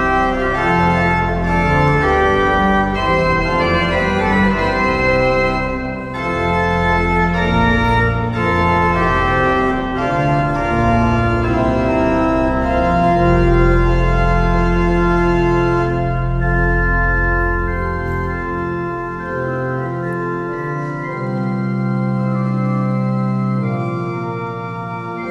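Large church pipe organ playing a hymn tune in full, sustained chords. About 19 seconds in, the pedal bass drops out and the organ carries on more softly in the upper voices.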